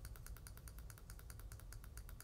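Faint, rapid computer-mouse clicking, a steady run of about a dozen clicks a second, as the mouse button is pressed again and again.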